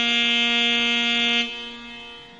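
Instrumental music: a single long, steady note on a reed instrument, which ends about one and a half seconds in and leaves quieter, lower steady tones sounding.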